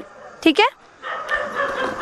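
A short, high, falling voice call about half a second in, then a low murmur of a seated crowd of women and children.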